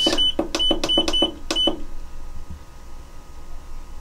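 Digital control panel of an ultrasonic cleaning bath beeping as its timer button is pressed repeatedly, about half a dozen short, same-pitched beeps with a click on each press in the first second and a half or so, setting the timer to 15 minutes. Then only faint room tone.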